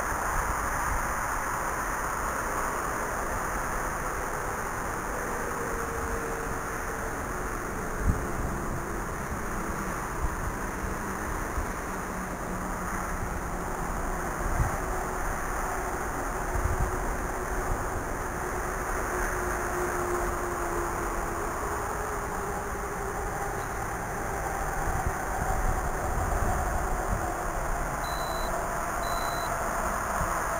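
RC One Xtreme quadcopter's motors and propellers whining at a distance, the pitch sliding slowly down and up as it flies, over steady wind noise on the microphone with a few low thumps.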